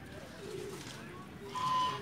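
Birds calling: low, soft cooing notes, then a short, louder, higher-pitched call near the end.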